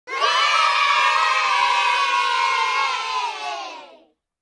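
A crowd of children cheering in one long held shout that fades out near the end.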